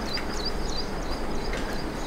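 Steady background room noise with a string of faint, short, high chirps repeating through it.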